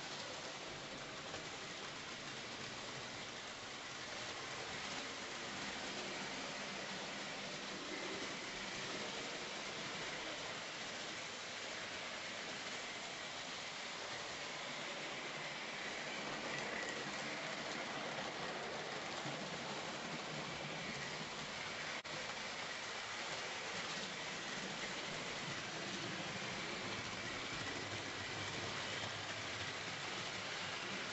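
Tri-ang OO-gauge model steam locomotive hauling a train of wagons around the layout: a steady rushing rattle of small wheels on the track and the running motor.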